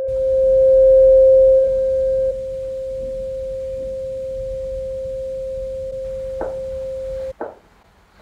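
A steady pure tone held for about seven seconds, louder for the first two seconds, then cut off suddenly, with two short knocks near the end.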